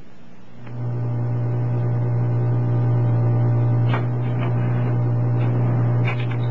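A steady low machine-like hum with many overtones, starting less than a second in and holding level.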